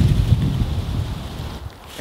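A low, dull rumble that fades away over about a second and a half.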